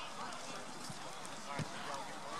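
Distant voices of players and spectators across an open soccer field. A single dull thump of a soccer ball being kicked comes about one and a half seconds in.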